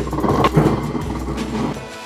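Background music, with a rushing noise that fades away over the first second and a half.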